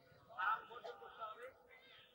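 A man's voice at a microphone making drawn-out sounds with sliding pitch, loudest about half a second in and trailing off after about a second and a half.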